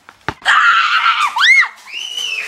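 A single thump, then a girl screams loudly for about a second, the scream turning into a high squeal that rises and falls; another high squeal starts near the end.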